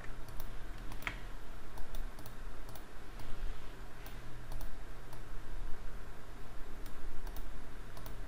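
Irregular light clicking from a computer mouse and keyboard in use, with one louder click about a second in, over a steady low hum.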